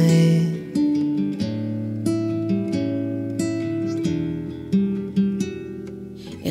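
Acoustic guitar picking an instrumental passage of a slow song, single plucked notes ringing over held bass notes, after a sung note fades out in the first second.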